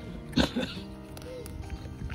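A pig grunts once, short and loud, about half a second in, over steady background music.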